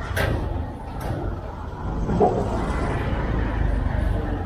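Outdoor city ambience with a steady low rumble, two short knocks of handling noise near the start, and a brief voice sound about two seconds in.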